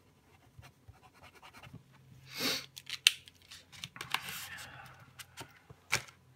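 Small handling sounds of a felt-nibbed paint pen on paper: faint scratching of the nib as a swatch and name are written, small clicks of the pen being handled, a sharp click about three seconds in, and a short sniff just before it.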